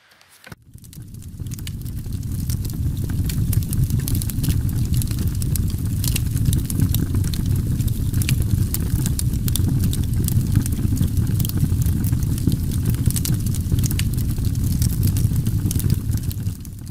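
Steady rumbling noise with scattered sharp crackles, fading in over the first two seconds after a brief silence.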